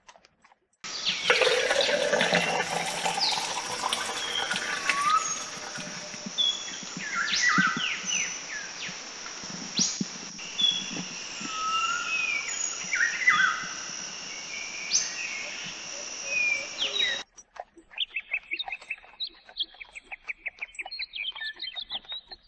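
A dense chorus of many birds chirping and whistling, which cuts off abruptly about seventeen seconds in; a quicker run of short repeated sounds follows until the end.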